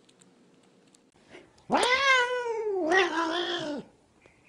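A cat's long, drawn-out meow, about two seconds long, starting a little before halfway. It rises in pitch, then slides down in a second, lower part.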